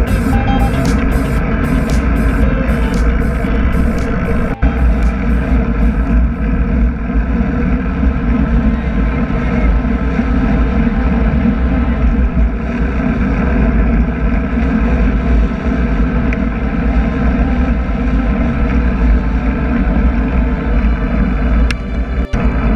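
Wind rumbling steadily on the microphone of a handlebar-mounted action camera on a road bike at riding speed, with music faintly underneath.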